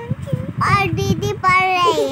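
A young boy singing a sing-song chant, holding long high notes that glide up and down, the longest falling away near the end.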